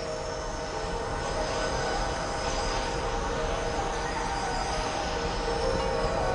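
Aerosol room-freshener can spraying in a long, steady hiss, over a steady droning tone.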